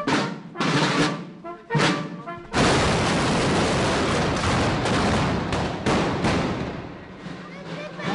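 A fusillade of muskets firing in the street. A few separate shots come in the first couple of seconds. From about two and a half seconds many guns fire together in a dense, continuous crackle that fades away near the end.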